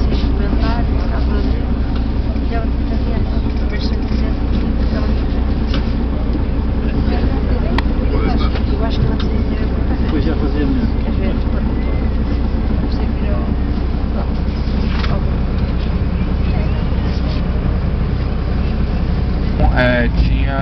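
Tour bus engine running, heard from inside the passenger cabin as a steady low drone, with faint passenger chatter over it.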